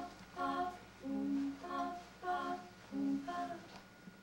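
A cappella voices humming the dance score: a string of short notes with brief gaps between them, stopping shortly before the end.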